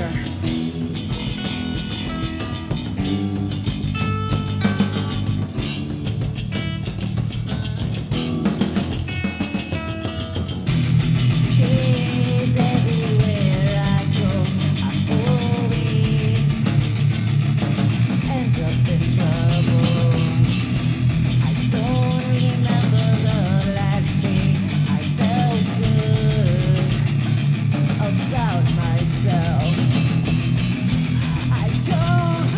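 Live rock band playing the opening of a metal song. A guitar picks single notes over a low sustained backing, then about eleven seconds in the full band with drums comes in, louder and denser, with a bending melodic line above it.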